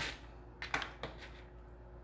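Roasted peanuts clicking and rattling on a baking sheet as a spatula pushes them around: a few short, scattered clicks in the first second or so.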